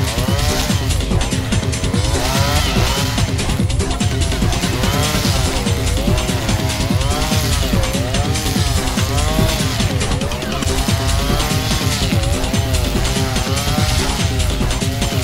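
Husqvarna 555RXT two-stroke brushcutter mowing waist-high grass with 4 mm round trimmer line. Its engine pitch dips and recovers about once a second as each swing loads the line. Under load the engine gives a whistling note.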